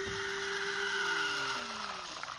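Coffee machine running as it dispenses: a steady motor hum with a hiss over it, and a second tone falling in pitch in the second half.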